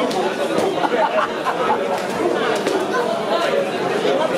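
Spectators' voices talking and calling out over one another in a large hall, a dense steady chatter with a few short sharp knocks in among it.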